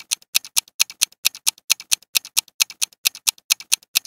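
Countdown-timer clock-ticking sound effect: a fast, even tick-tock of sharp clicks alternating louder and softer, several a second, marking the answer time.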